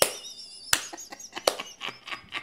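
A man's high, squeaky laughter, broken by three sharp hand smacks about three-quarters of a second apart.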